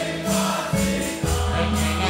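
A church congregation singing a gospel song together over a band, with a bass line moving under the voices and a steady high percussion beat of about four strikes a second.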